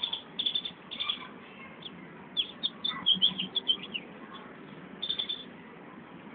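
Small birds chirping: several quick runs of short, high chirps, the busiest about two and a half to four seconds in, over a steady outdoor background noise.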